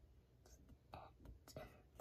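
Near silence, with a few faint bits of whispering: a child sounding out the next word under his breath.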